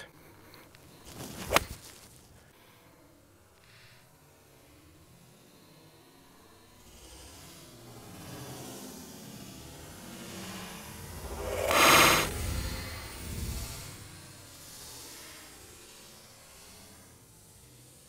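A golf iron striking a ball out of bunker sand in one sharp click about a second and a half in. Then the same shot slowed down: a long swelling swish that peaks in a drawn-out, muffled impact about twelve seconds in, then dies away.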